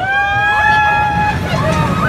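Roller coaster riders screaming and whooping in long, held cries, each rising at the start, as the train of cars rolls past close by, with a low rumble from the train underneath.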